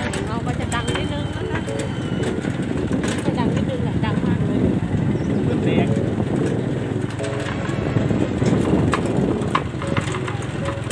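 A small vehicle driving along a bumpy dirt track: steady engine running with road noise and frequent knocks and rattles.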